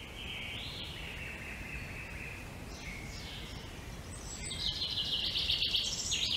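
Woodland ambience fading in: a low steady rumble of background noise with high thin chirping calls. About four and a half seconds in, a louder, rapidly pulsing high trill comes in and runs for over a second.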